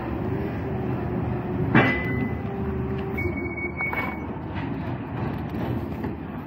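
Forklift running at a loading dock: a steady mechanical drone. There is a short clank with a falling pitch a little under two seconds in, and a thin high whine for about a second after three seconds.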